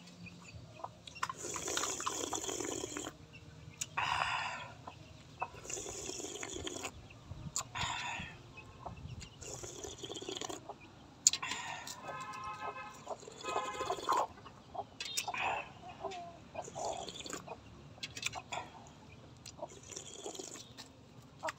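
Soup slurped from a spoon several times over, each slurp a short noisy burst. Chickens cluck in between, with one longer pitched chicken call about twelve seconds in.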